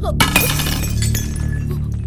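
A cup and serving tray dropped on a hard floor: a crash of breaking glass in the first half second, with clinking and ringing that dies away over about a second. Low background music runs underneath.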